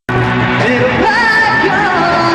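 A male singer sings a gliding, bending vocal line over a rock band backing with electric guitar. The sound drops out completely for a split second right at the start.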